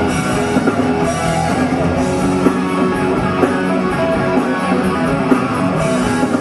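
Hard rock band playing live, with electric guitars, bass guitar and drum kit, loud and continuous with sharp drum hits, as heard from the audience in the club.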